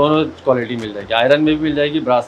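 A man talking in short voiced phrases that the recogniser did not write down as words.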